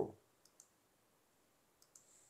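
Faint computer mouse clicks: two quick ticks about half a second in and two more near the end.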